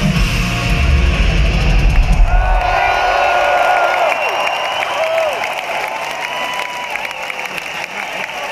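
Live power metal band playing loud with drums and guitars, the music ending about two and a half seconds in, then an arena crowd cheering and shouting, slowly fading.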